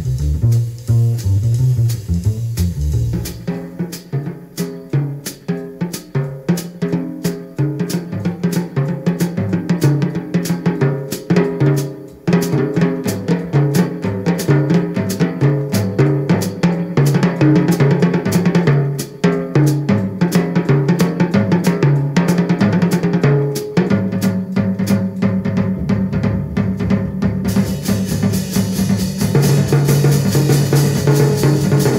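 Jazz drum kit taking a solo passage in a small-group jazz recording: snare, bass drum and cymbal strokes in a busy, regular stream. The bass drops out about three seconds in and comes back near the end, with brighter cymbals in the last few seconds.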